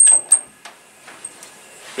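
Elevator car doors closing: two sharp clacks in the first half-second, then a couple of faint clicks.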